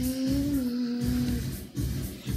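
Background music with a steady low beat, over which one held hummed note rises slightly and settles before stopping about three-quarters of the way through.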